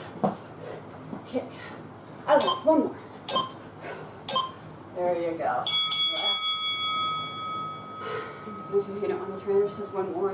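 A round timer bell rings once about six seconds in: a bright ring whose tones die away over a few seconds, the lowest lingering longest. It marks the end of a workout round.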